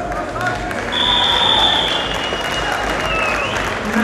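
Arena crowd noise with scattered shouting voices. About a second in, a long, high, steady whistle sounds for just over a second, then carries on more faintly and fades.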